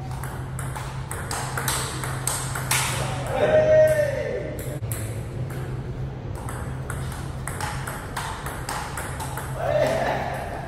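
Table tennis rally: the plastic ball clicking back and forth between paddles and the Donic table, many sharp clicks in quick succession. A person's voice calls out loudly about three and a half seconds in, and again near the end.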